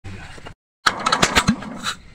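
Several sharp metallic knocks and handling noise from tools being worked on a small diesel engine, in short pieces broken by a moment of dead silence.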